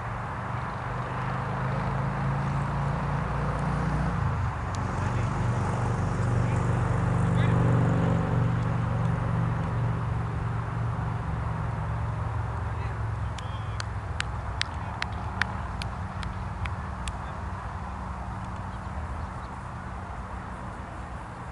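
A low drone swells over the first several seconds, peaks about eight seconds in and fades away. Then comes a quick run of about ten sharp clicks.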